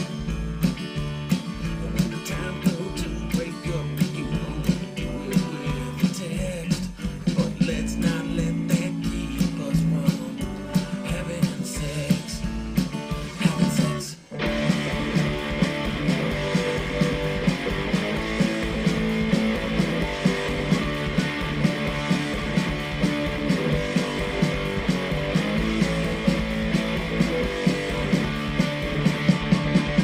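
Rock song playing back: drums and electric guitars, with a brief drop about halfway through, after which the song goes on in a new section at a faster tempo.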